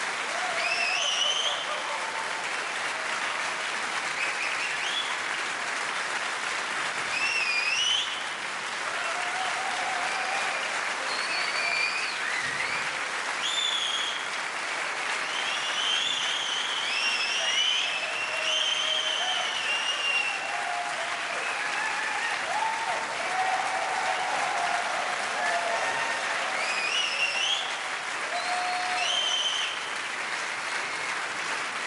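Large concert-hall audience giving a standing ovation: dense, steady applause with repeated rising whistles and shouted cheers over it.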